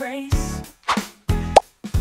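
Upbeat intro jingle: pitched instrument notes over a low beat, with short breaks between phrases. A short sound effect whose pitch shoots quickly upward comes about one and a half seconds in and is the loudest moment.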